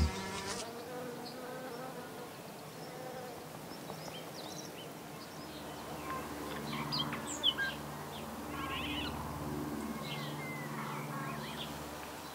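A bee buzzing in a low steady drone that breaks off and comes back several times, stronger in the second half. Short bird chirps sound faintly from about the middle on.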